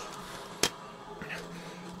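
Quiet room tone with a single sharp click about two-thirds of a second in.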